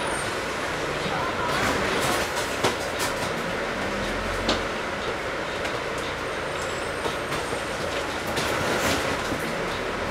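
Inside a moving Volvo Olympian three-axle double-decker bus: steady engine and road noise with a low hum, broken by scattered clicks and knocks from the rattling body and fittings, the sharpest about two and a half and four and a half seconds in.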